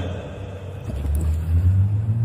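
A steady low rumble, without speech, that swells towards the end.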